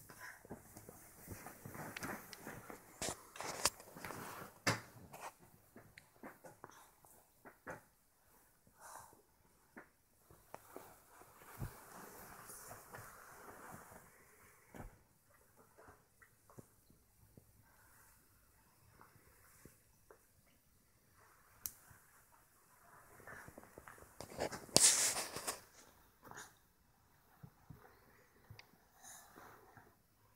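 A small child's soft breathing and snuffles, mixed with rustling of bedding and a hand moving over the child, in short irregular bursts. There is one louder rustle or breath about 25 seconds in.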